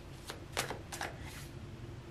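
Tarot cards being handled as the next card is drawn from the deck: a handful of faint, short card flicks and rustles.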